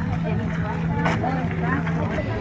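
Faint voices of several people talking over a steady low hum.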